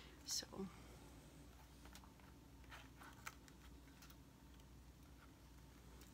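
Near silence, with a few faint ticks and rustles from a small cardboard box being opened by hand.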